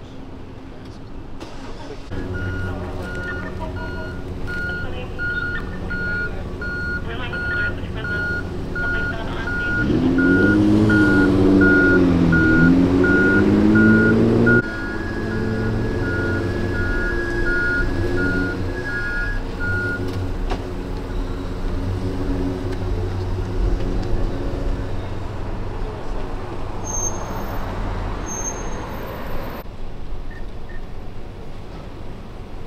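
A police van's engine running while its reversing alarm beeps steadily as the van backs out; the beeping stops about two-thirds of the way in. A louder, wavering drone swells in the middle for several seconds and cuts off abruptly.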